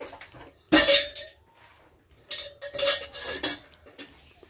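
Hard objects knocked together with a metallic ring, like pots or dishes being handled: one sharp strike about a second in, then a quick run of clinks in the second half.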